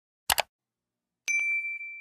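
A quick double mouse-click sound effect about a third of a second in, then a notification bell 'ding' about a second later that rings on and fades: the click and bell effects of an animated subscribe-and-like button.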